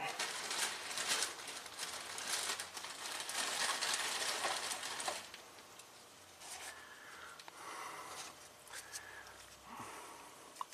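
Rustling and crinkling handling noise close to the microphone, busy for about the first five seconds, then fainter with a few scattered small noises.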